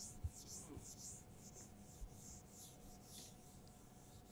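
A whiteboard eraser wiping the board in faint, repeated hissing strokes that die away near the end.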